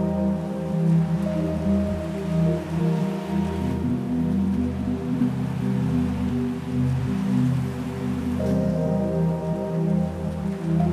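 Instrumental electronic music played live from a laptop running Ableton, triggered from an Akai APC40 pad controller: slow sustained synth chords over a steady deep bass. The upper notes shift about three and a half seconds in and again near the end.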